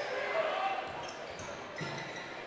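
Crowd murmur in a gymnasium during play, with a basketball bouncing on the hardwood court.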